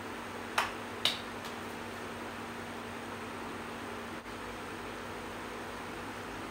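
Electric fan running steadily with a low hum. About half a second in come two sharp clicks, half a second apart.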